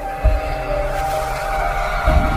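Intro music: held notes stepping between pitches over a deep, rumbling bass, with a low boom about a quarter of a second in.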